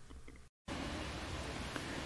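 Faint background, a brief total dropout about half a second in, then a steady, even hiss of outdoor background noise.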